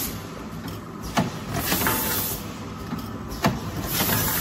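Rotary spout pouch filling and sealing machine running with a steady mechanical hum, a sharp clack a little over a second in and again about three and a half seconds in as it cycles, and a hiss of air in between.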